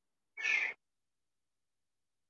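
One short breath-like puff of noise about half a second in, cut hard on both sides by the call's noise-gated audio, with dead silence around it.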